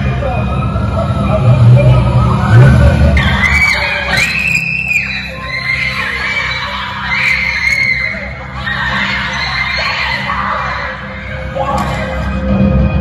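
Women's voices shouting and screaming in high, strained cries over a steady background music track.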